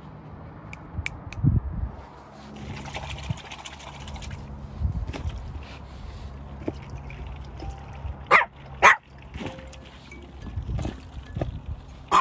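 A Pomeranian barks twice in quick succession about eight seconds in, two short sharp barks about half a second apart. Otherwise there is only low rumbling noise and a few faint clicks.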